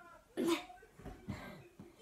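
A single short cough from a young girl about half a second in.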